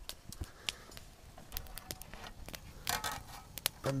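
Small wood campfire crackling: scattered sharp pops and clicks at irregular intervals, with a couple of brief louder bursts.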